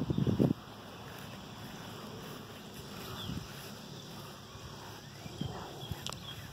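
A brief low rumble of wind on the phone microphone at the start, then quiet outdoor ambience with a few soft footsteps on grass and some faint bird chirps.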